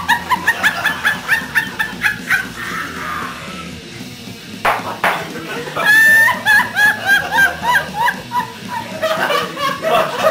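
High-pitched laughter in rapid, repeated bursts, about four a second, in two long fits: at the start and again from about six seconds in. A single sharp knock comes shortly before the second fit.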